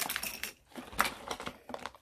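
Small hard objects clicking and clinking as a hand rummages among items on a table, a handful of sharp clicks with the loudest about a second in.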